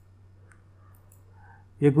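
A few faint computer mouse clicks while a PDF is scrolled, over a low steady hum; a man starts speaking near the end.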